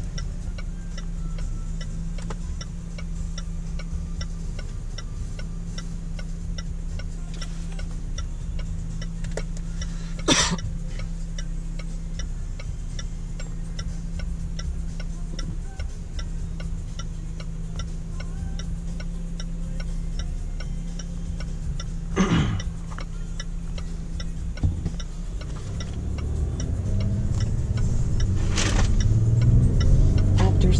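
Range Rover Sport SDV6 diesel V6 idling at a standstill, heard from inside the cabin, with the turn-signal indicator ticking steadily. Three brief whooshes of passing traffic come through; near the end the engine pulls away and its sound builds.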